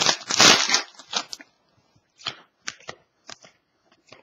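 Crinkly foil card-pack wrapper rustling as it is torn open and pulled off, for about the first second. A handful of short, sharp flicks follow as the trading cards are slid apart one by one.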